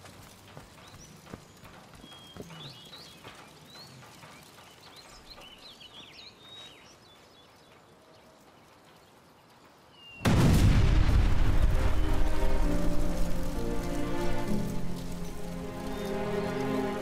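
Quiet outdoor ambience with faint bird chirps, then about ten seconds in a sudden loud explosion, the overturned burning car blowing up. A low rumble follows under swelling dramatic music.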